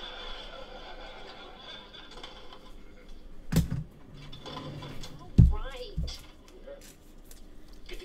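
Faint background voices with three sharp knocks, the first about halfway through and two more close together later, the middle one the loudest.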